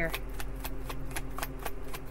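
A tarot deck being shuffled by hand, the cards riffling in a quick, even run of soft clicks, about six or seven a second.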